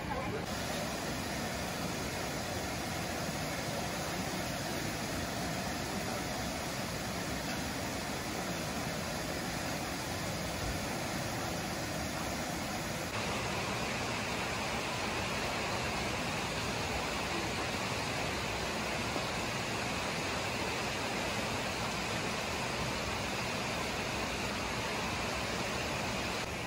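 Steady rush of river water spilling over low stepped weirs, an even hiss-like wash that brightens slightly about halfway through.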